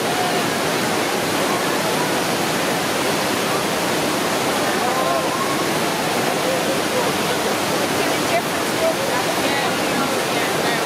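Heavy white water pouring over a river weir and churning below it: a steady, unbroken rush of water.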